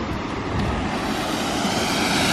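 Steady rushing noise of a waterfall pouring into a pool.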